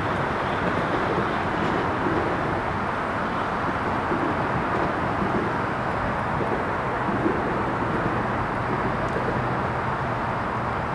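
Steady rumble of a diesel freight train approaching in the distance, mixed with passing road traffic.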